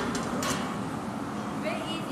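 Steady roar of a glassblowing studio's gas-fired furnace and glory hole, with a sharp click about half a second in and faint voices in the background.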